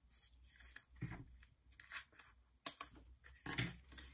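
Foam adhesive strip being handled and peeled from its clear plastic liner: a run of short rustling, tearing strokes with a sharp click a little under three seconds in.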